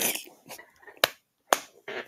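Two sharp clicks about half a second apart, with faint breathy sounds around them.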